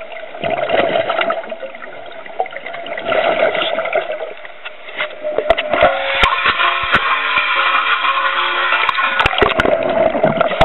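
Water sounds picked up by a camera held underwater in a swimming pool: a steady rushing and bubbling noise. About six seconds in, a steady pitched hum joins it, and sharp clicks come more and more often near the end.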